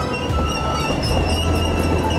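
Background music with a steady low rumble underneath.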